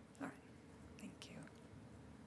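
Near silence: room hum with two brief, faint snatches of off-microphone speech.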